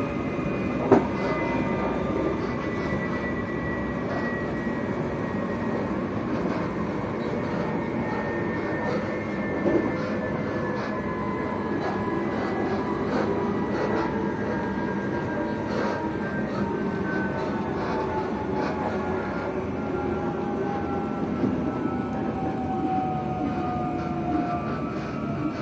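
Passenger train running, heard from inside the carriage: a steady rumble of wheels on rail with a whine that falls slowly in pitch as the train slows. Two short knocks come about a second in and near the middle.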